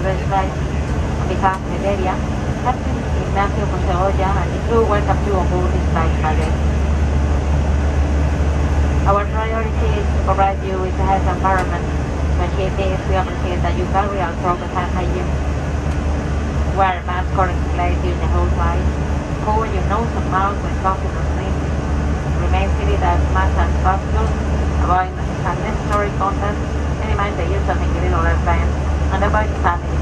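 Steady low drone of an Airbus A321 airliner cabin in flight, with a person speaking over it almost throughout.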